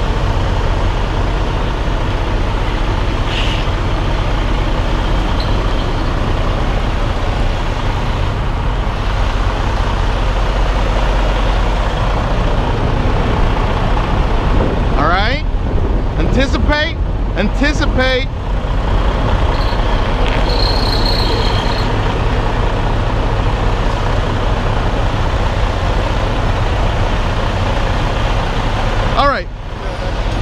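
Freightliner Cascadia semi tractor's diesel engine running at low revs, a steady rumble, as the truck slowly reverses a trailer.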